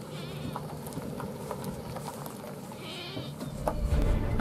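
Nissan NV3500 van rolling in over a gravelly road and pulling to a stop, with small crunching clicks from the tyres and short, wavering high squeals right at the start and again about three seconds in.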